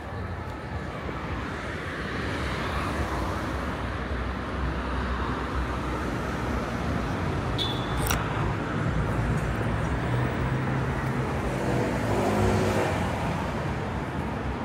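Road traffic on a city street: a steady rush of cars going by, swelling as vehicles pass about three seconds in and again near the end, with one short sharp click a little past halfway.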